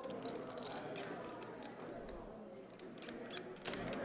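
Poker chips clicking faintly as they are handled on the felt, a scatter of light, irregular clicks.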